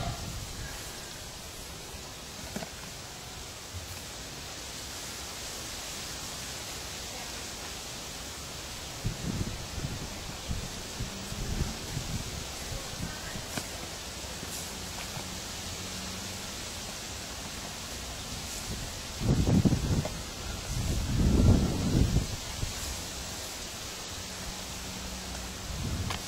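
Outdoor background noise: a steady hiss with scattered low rumbling bursts, the two loudest about three-quarters of the way through.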